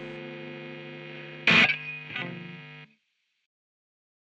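Telecaster-style electric guitar through an amp: a held chord fading, then a hard-picked chord about a second and a half in and a lighter one just after. The sound cuts off suddenly a little before three seconds in.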